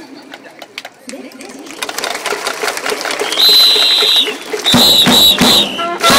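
Stadium crowd murmuring, then a cheer-squad whistle blown in one long blast followed by three short blasts, each with a drum beat. This is the cue that starts the next cheer song.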